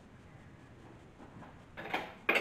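Quiet room tone, then a short noise near the end as a small dish is handled on the kitchen counter.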